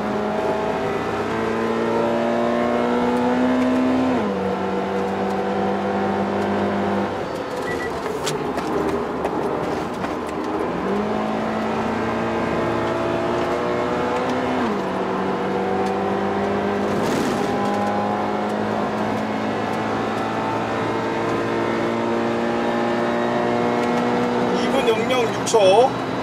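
Toyota GT86's 2.0-litre flat-four engine heard from inside the cabin, pulling hard on track. Its pitch climbs slowly and drops abruptly at gear changes, about four seconds in and again near fifteen seconds, with a quick rise around eleven seconds.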